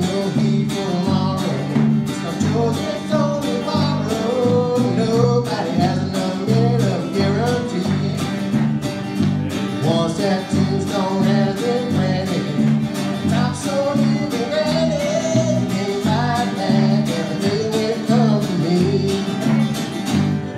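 Live country-gospel music: strummed acoustic guitar and electric bass with a small group of voices singing.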